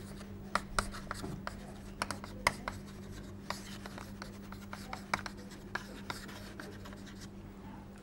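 Chalk writing on a chalkboard: a string of short, irregular taps and scratches as words are written, over a steady low hum.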